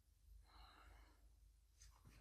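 Near silence: room tone, with a faint breath about half a second in.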